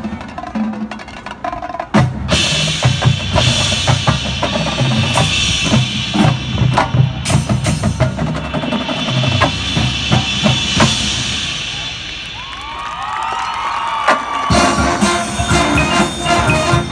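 Marching band percussion playing a loud drum-driven passage: drum kit and bass drums with many sharp hits over a pulsing bass line. Near the end a few swooping tones sound, and then sustained band chords come back in.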